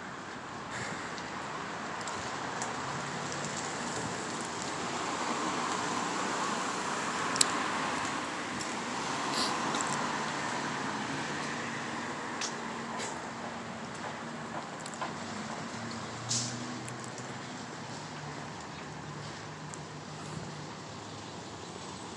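Road traffic on a city street: cars going by, one swelling past in the first half, then a low engine note in the second half, with a few sharp ticks scattered through.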